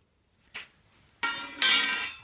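Flexible corrugated metal exhaust pipe from a diesel heater kit rattling and ringing as it is handled, a burst of just under a second starting a little past halfway, after a light tap about half a second in.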